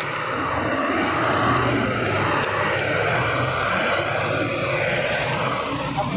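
A heavy vehicle's engine and tyres running past close by on the highway, a steady drone whose hiss grows toward the end as it comes alongside.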